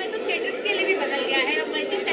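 Voices of several people talking over one another: chatter at a crowded press event.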